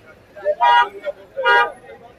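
A road vehicle's horn sounding two short honks, about a second apart, over the chatter of a busy street market.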